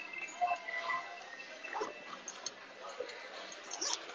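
Rustling and a few small clicks and knocks of hands searching through a handbag, over faint background voices.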